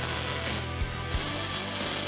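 MIG welder welding steel bracing tube to a car body pillar, a steady hiss throughout, with background music underneath.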